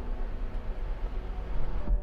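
Electric sunroof of a 2023 Hyundai Verna sliding shut under its motor on one-touch close, a steady whirring hiss that stops abruptly with a soft knock near the end as the glass panel seats.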